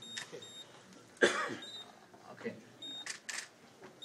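Short, high electronic beeps sound several times, spaced roughly a second apart. A loud cough comes about a second in, and two sharp clicks about three seconds in.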